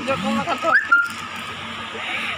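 Voices and laughter close by, over a steady hubbub of crowd chatter; about a second in there is a short rising squeal and a brief held high note.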